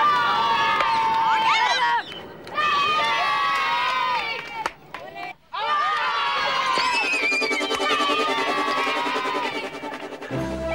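Boys shouting and cheering in loud, overlapping high-pitched calls. Music comes in about seven seconds in and runs under the shouts.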